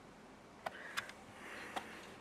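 Pages of a large hardcover book being handled and turned: soft paper rustling broken by three sharp clicks.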